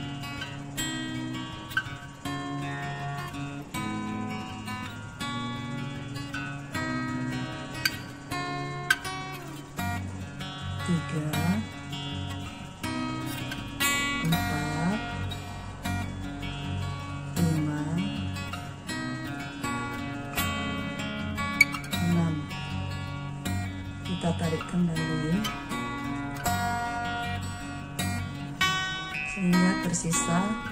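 Background music led by acoustic guitar, playing steadily with plucked and strummed notes.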